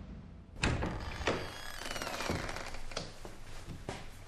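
A series of about five dull thuds and knocks, the loudest about half a second in, with a thin falling squeak around two seconds.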